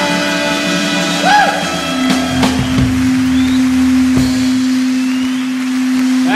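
Live rock band at the close of a song: the full sound thins to a single held note that rings steadily from about two seconds in, with a few short sliding pitches and sharp knocks over it.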